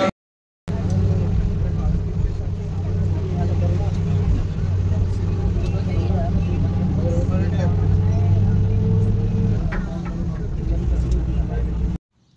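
Bus engine droning steadily, heard from inside the passenger cabin, with passengers talking over it; the engine's low note drops away a little before the end. A brief silence comes first.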